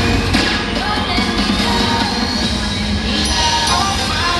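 Cheerleading routine music mix with singing, played loud and without a break.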